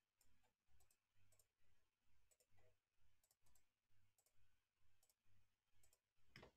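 Near silence, with faint computer mouse clicks over a faint low pulse that repeats about twice a second.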